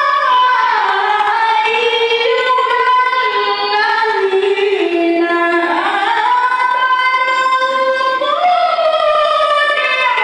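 A woman chanting Qur'an recitation through a microphone, in one unbroken melodic line of long held, ornamented notes. The melody sinks lower through the middle and climbs back up about six seconds in.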